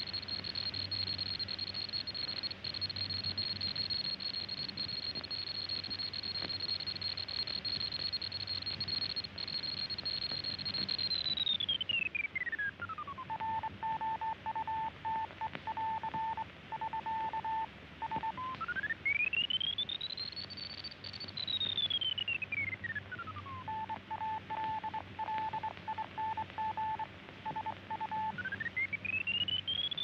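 Radio signal whistle: a steady high tone that slides down in pitch and breaks into short keyed beeps like Morse code. It then sweeps up high and back down to a second run of keyed beeps, and rises high again near the end. A faint low hum runs underneath.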